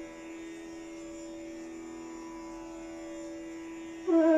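A steady drone, typical of a tanpura accompanying Hindustani classical music, holding one pitch with a rich cluster of overtones while the bansuri rests between phrases.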